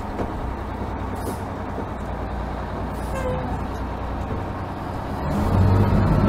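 Detroit Diesel 6V92 two-stroke V6 diesel of a 1955 Crown Firecoach fire engine running at low road speed, heard from the open cab; it grows louder about five seconds in.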